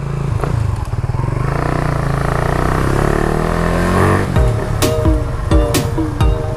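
Motorcycle engine accelerating, its pitch rising steadily for a few seconds. About four seconds in, electronic music with a heavy, regular beat comes in over it.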